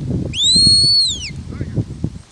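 A shepherd's whistle command to a working sheepdog: one long, loud note of about a second that rises, holds, then falls away.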